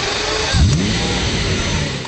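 Lamborghini supercar engine revving, its pitch climbing sharply about half a second in and then holding high.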